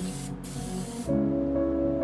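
Spray gun hissing as it sprays black Raptor bed liner in a texture test, then cutting off sharply about a second in. Background music with sustained notes plays underneath and carries on after.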